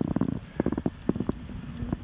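Snowboard riding over snow, heard as a low rumble with irregular knocks on a handheld camera's microphone.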